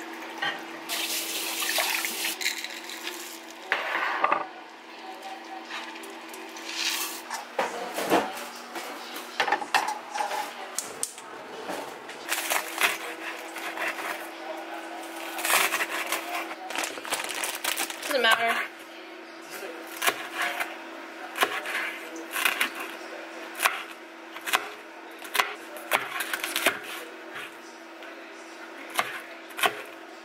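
Water pouring from a dispenser tap into a mug, then a kitchen knife chopping green onions and red pepper on a cutting board in irregular knocks, over a steady low hum.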